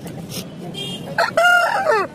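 A rooster crowing once, loud, starting a little past the middle, its pitch dropping as the crow ends.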